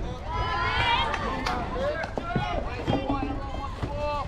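Several voices calling and shouting at once, high-pitched and overlapping like children's voices, with a sharp knock about a second and a half in.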